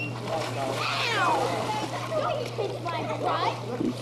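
Voices with high, swooping squeal-like calls about a second in, over light splashing of water in a pool.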